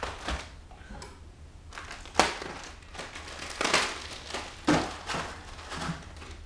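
Cellophane wrapping and plastic trays of marshmallow Peeps packs being torn open and crinkled by hand, in a string of short crackling bursts, the sharpest about two seconds in.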